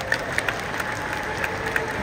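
Audience applauding: irregular scattered claps over general crowd noise.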